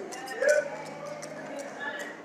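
Scattered voices of people talking among themselves in a hall, with one short, louder voice about half a second in.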